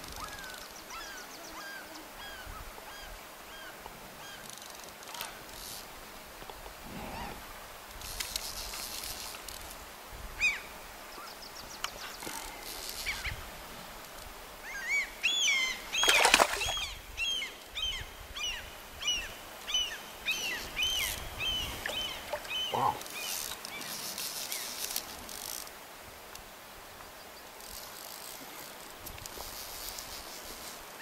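Birds calling: a slow string of falling calls at the start, then a quick run of high, sharp calls about halfway through, loudest at the peak.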